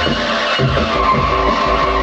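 Modified Atari Punk Console, a DIY square-wave noise box built around 555 timers, giving a squealing, buzzing electronic tone as its knobs are turned, over a steady electronic beat. A high held tone sets in about a second in.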